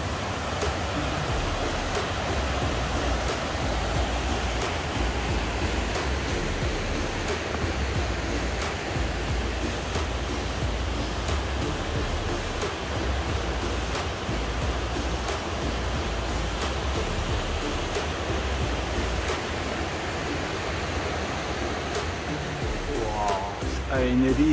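River water rushing steadily over small rocky cascades.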